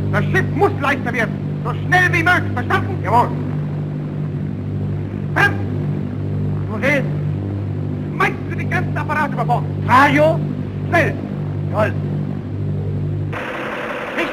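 Steady low drone of airship engines, overlaid by men's short shouted calls. The drone cuts off abruptly just before the end, giving way to a hiss.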